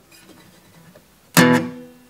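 One plectrum strum on a steel-string acoustic guitar, about a second and a half in. It is an E minor chord palm-damped with the heel of the picking hand, so it dies away quickly.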